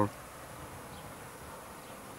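Faint, steady hiss of outdoor background noise with no distinct event.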